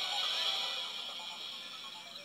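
Electronic musical tag played through the small speaker of a Kamen Rider W DX Double Driver toy belt after the Joker Gaia Memory is plugged in, part of its transformation sound. A steady, tinny electronic chord that fades out gradually.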